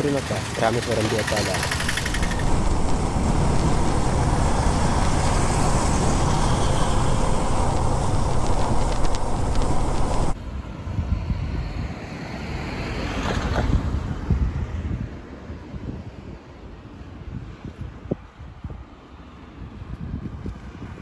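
A motorcycle riding at speed, its engine buried under a steady rush of wind on the microphone. The sound cuts off abruptly about ten seconds in, leaving quieter outdoor wind and ambient noise.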